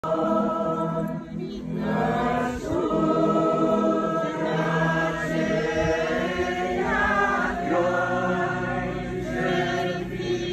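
A group of voices singing an Orthodox church chant together, unaccompanied, in long held notes that move slowly from pitch to pitch.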